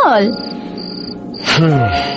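Crickets chirping in short high trills, about one a second, over background music with steady drone notes and a falling, sliding note at the start and near the end.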